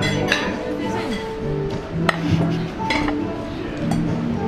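Background music, with about four sharp clinks of hard crab shell being worked apart against a plate.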